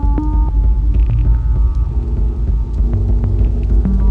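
Eurorack modular synthesizer jam: a loud, deep bass drone under sequenced notes that step from pitch to pitch, changing every fraction of a second to about a second.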